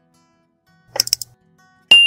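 Subscribe-button animation sound effect over soft acoustic guitar background music: a quick run of mouse clicks about a second in, then a bright bell ding near the end that rings on and fades.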